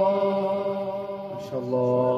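A man's voice in melodic Quranic recitation, drawing out one long held note that slowly fades, then starting a new, lower held note about one and a half seconds in.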